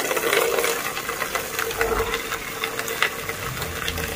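Water running from a wall tap into a steel basin: a steady splashing stream, with a steady tone held underneath it.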